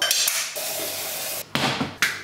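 Water running into a saucepan for about a second and a half, with a steady hiss and a faint steady tone, then cut off abruptly. A shorter hiss follows near the end.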